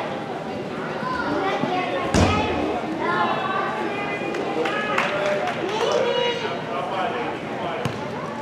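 Voices of players and spectators calling out during an indoor soccer game, with one loud thud of the ball about two seconds in.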